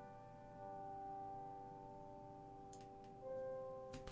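Sampled piano notes from the Aurora Kontakt library's 'Intimate Piano' patch, played through a high-pass filter so that only the top end of the sound comes through, thin and quiet. Held notes ring on, and a new note comes in about three seconds in.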